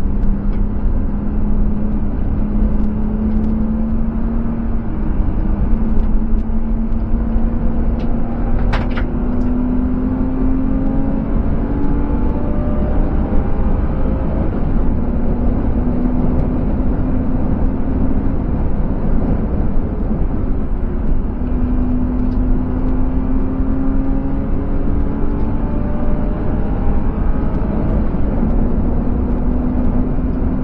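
BMW E36 320i's 2.5-litre M50 straight-six pulling hard at track speed, heard from inside the cabin. Its note climbs slowly and drops back several times, over a steady roar of wind and tyres.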